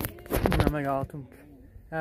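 Speech only: a man talking briefly.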